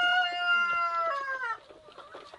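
A rooster crowing: one long held call that dips in pitch and stops about a second and a half in.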